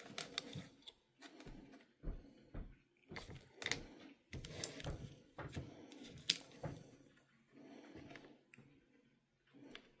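Faint, irregular clicks and rustles of alligator-clip leads and small components being handled and reconnected on a wooden board.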